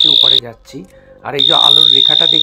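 A man talking in Bengali over a steady high-pitched whine. The voice and the whine both cut out for about a second near the start, then resume.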